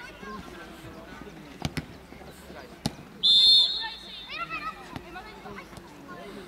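Referee's whistle, one short shrill blast about three seconds in, the loudest sound here. Before it come two sharp ball kicks, and players' shouts follow it.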